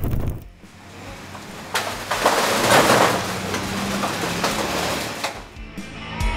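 A rush of noise that swells up, peaks and fades over about three seconds, with a low steady hum beneath it, like an edited transition whoosh. Guitar music comes in near the end.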